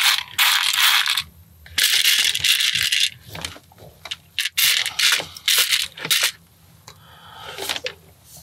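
Loose plastic LEGO pieces rattling and clattering as a hand rummages through a tray of parts to find one particular piece, in three bursts of about a second each with scattered clicks between them and a softer burst near the end.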